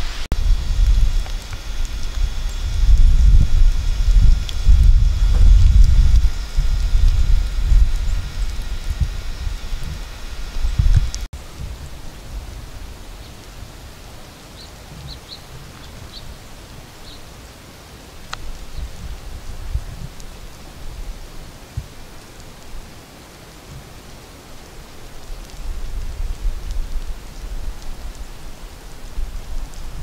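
Wind buffeting the microphone in uneven gusts, a heavy low rumble that stops suddenly about eleven seconds in. Quieter outdoor air follows, with a few faint high chirps and weaker gusts returning near the end.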